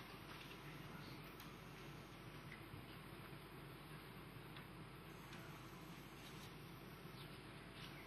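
Near silence: faint room tone of a large hall, with a few faint ticks.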